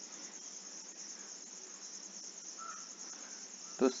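Steady, faint high-pitched background hiss with no speech.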